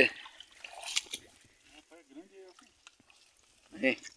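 Water trickling and dripping from a wet cast net as it is hauled out of shallow water, a few light scattered drips and splashes, with a faint voice in the background.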